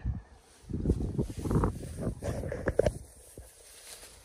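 Rustling and scuffing of footsteps through grass, irregular and lasting about two seconds, starting just under a second in.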